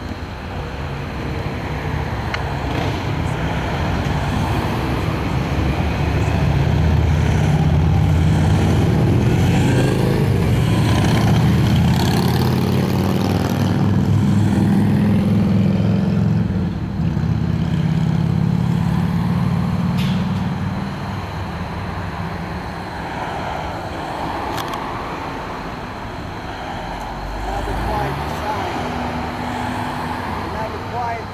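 Road traffic passing: a low vehicle engine and tyre rumble swells over several seconds, stays loud through the middle, then fades.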